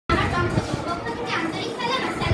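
Girls' voices speaking in a classroom; speech only.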